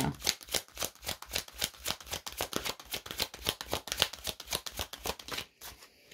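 A tarot deck being shuffled by hand: a fast, even run of quick card clicks that stops shortly before the end.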